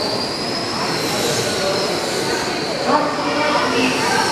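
Electric RC race trucks with 21.5-turn brushless motors running laps on a carpet oval. Their high-pitched motor and gear whine slowly rises and falls in pitch as the pack circulates, over a steady hiss of tyres and running gear.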